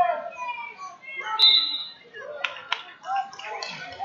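Several people's voices calling out and talking in a gym, with a couple of sharp claps about halfway through.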